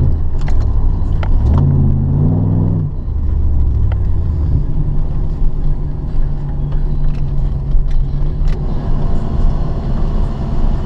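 The 1994 Camaro Z28's LT1 V8 heard from inside the cabin, running at low speed. Its pitch steps up about a second and a half in, then falls back to a steady low run from about three seconds on, with scattered sharp clicks throughout.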